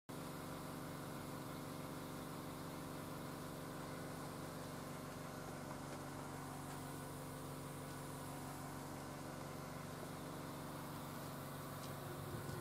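A steady, unchanging mechanical hum made of several held tones, as from an engine or motor running at constant idle.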